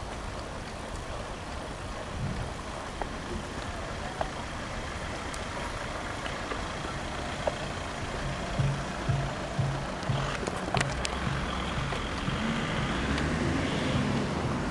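Wind and rolling noise on an action camera moving along a cycle path, with road traffic in the background. From about eight seconds in there is a rhythmic low thumping.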